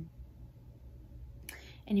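A pause filled with a low steady room hum, then a sharp breath drawn in through the mouth about a second and a half in, just before a woman starts speaking again.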